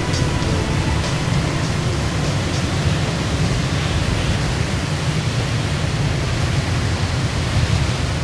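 A steady rushing noise with a heavy low rumble and no tune or beat, like a soundtrack's wind or surf effect.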